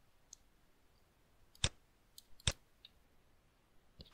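Two sharp computer mouse button clicks a little under a second apart, with a few fainter ticks around them.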